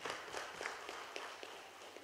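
Scattered applause from a small audience, irregular hand claps that thin out and fade towards the end.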